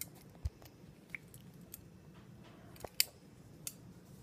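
Scattered small clicks and taps, with a short low thump about half a second in and the sharpest click about three seconds in.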